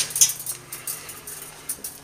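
Light handling noise at a workbench: one sharp click a fraction of a second in, then a faint steady hum with a few small ticks.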